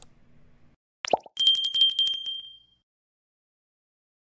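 Subscribe-button animation sound effects: a sharp mouse click, then about a second in a quick downward pop, then a small notification bell ringing rapidly for about a second and a half before fading out.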